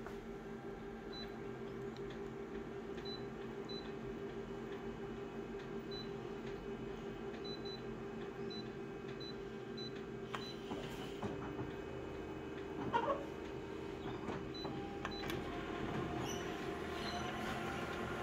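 Multifunction colour copier humming steadily, with faint short beeps and clicks as its touch panel and buttons are pressed. About eleven seconds in, its running sound deepens and more mechanical noises follow as the copy job starts.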